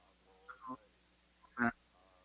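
Low room tone over a video-call connection, broken by short fragments of a person's voice: faint ones about half a second in and one brief, louder syllable about a second and a half in.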